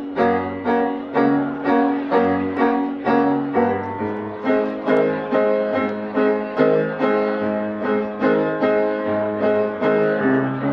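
Upbeat piano music in a steady bouncing rhythm of about two beats a second, a bass note alternating with chords.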